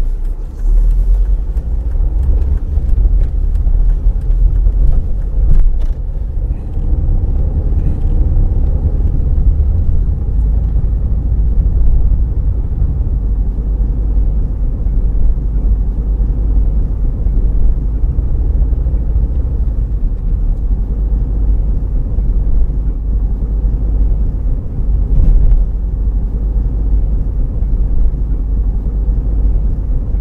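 A car driving along a road: a steady low rumble of engine and tyre noise.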